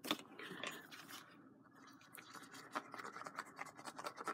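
Faint scratching and light rustling of cardstock being handled, then the tip of a liquid glue bottle scratching across an embossed card panel in the second half.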